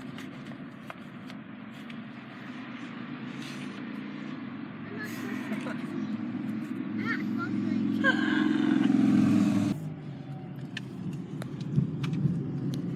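Rumble of a car's engine and road noise heard inside the cabin, growing louder over several seconds and then cutting off suddenly about ten seconds in, with a man and a woman laughing.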